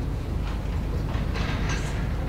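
Steady low rumble of room background noise, with a faint, distant voice about a second in.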